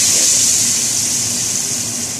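Hot tadka of oil, cumin and curry leaves sizzling as it hits the liquid kadhi in the pot. It makes a loud, steady hiss that slowly fades.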